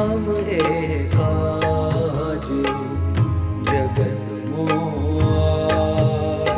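Devotional music: a gliding melody over a steady bass, with sharp drum strokes falling at a regular beat.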